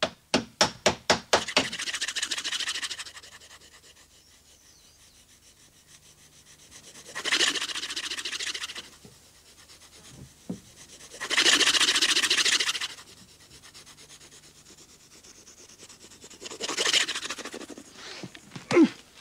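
A hand tool working the wooden hull of a boat: a quick run of about ten light strikes in the first second and a half, then four separate rasping scrapes of a second or two each, spaced a few seconds apart.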